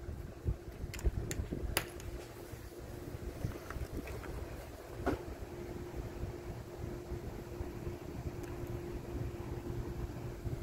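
Small clicks and taps of multimeter test probes against a tube radio's metal chassis and switch, a few in the first two seconds and one about five seconds in, over a low handling rumble on the microphone and a faint steady hum.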